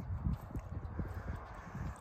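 Faint, irregular soft thuds, several a second, over a steady low rumble.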